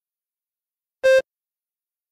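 A single short electronic beep from a test timer, about a second in, marking the end of the response time as the countdown reaches zero.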